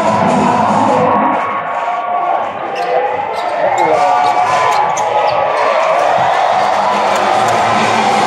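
Basketball game on a hardwood court in an arena: the ball bouncing and sneakers squeaking as players run the floor, over loud arena music and crowd voices.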